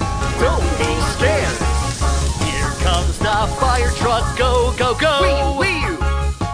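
Upbeat children's song music with a steady bass beat and a bright melody.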